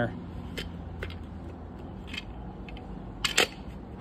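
Light clicks and knocks from an engine distributor being handled and seated in the block, its plastic cap and spark plug wires knocking together, with a sharper double click near the end. A low steady hum sits underneath.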